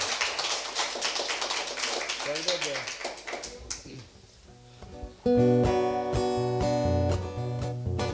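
Steel-string acoustic guitar played by hand: quick scratchy strokes across the strings for the first few seconds, then, a little past halfway, loud ringing strummed chords that change about once a second.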